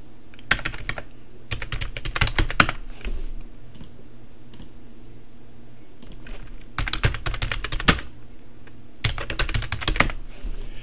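Computer keyboard typing in quick bursts of keystrokes: a burst about half a second in, another from about 1.5 to 2.5 seconds, a pause of a few seconds, then more bursts near 7 and 9 seconds.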